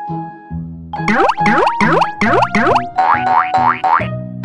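Children's background music overlaid, from about a second in, by a run of quick rising cartoon 'boing' sound effects, about five sweeps a second. A shorter, higher run of sweeps follows near the end.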